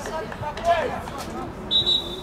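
Voices calling out across a football pitch, then a referee's whistle blown once, a short high blast near the end.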